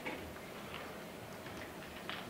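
Faint footsteps of shoes on a hard classroom floor, a few soft irregular taps, over a low steady room hum.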